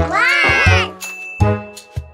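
Cartoon sound effect: a pitched glide that rises and then falls over about a second, marking a character falling out of bed. The children's song's backing music comes back in just after.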